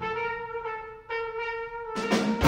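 A solo trumpet in a jazz big band holds a long note, breaks briefly about a second in, then holds a second long note.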